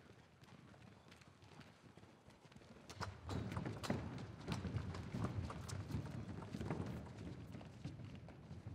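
Several people running on all fours on arm-extension crutches: a quick, uneven patter of thuds and clicks from feet and crutch tips striking a stage ramp. It starts about three seconds in and eases off near the end.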